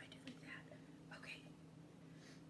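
Near silence: faint whispering in a couple of short bits over a low steady hum.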